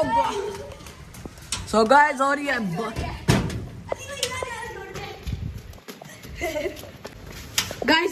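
A boy's voice calling out a few times over a steady hiss of heavy rain. There are a couple of sharp knocks, one about three seconds in and one near the end.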